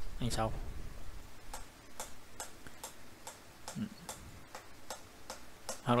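A run of light, quick clicks, several a second, at first closely spaced and then thinning out.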